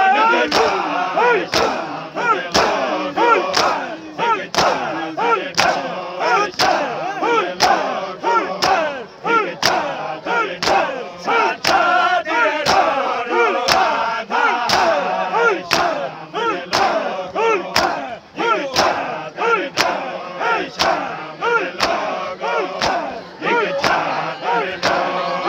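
Matam: a crowd of men chanting while beating their chests with their open hands. The slaps land in a steady rhythm about twice a second.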